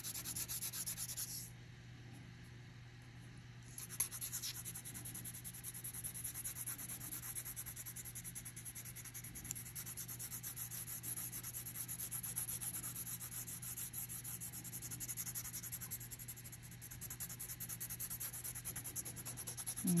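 Colored pencil scratching on paper in rapid back-and-forth shading strokes. The strokes stop briefly about a second and a half in and start again at about four seconds.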